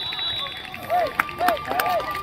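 Young players' voices shouting across an open field: three short calls, about a second in, half a second later and near the end.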